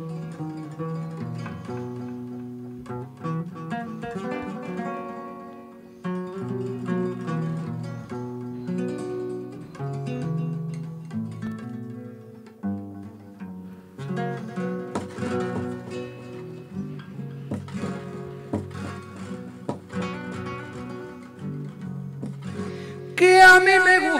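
Spanish nylon-string guitar with a capo played fingerstyle in a flamenco style, single notes and strummed chords, with studio reverb added. A man's voice comes in loudly, singing, near the end.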